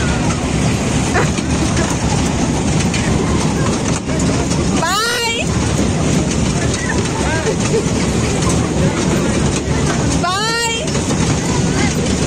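Children's fairground carousel ride running: its cars rumble steadily around a circular rail track amid crowd chatter. Two short, loud, high-pitched calls stand out, about five seconds in and again near the end.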